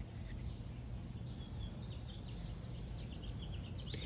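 Steady background noise with faint, scattered high chirps of birds.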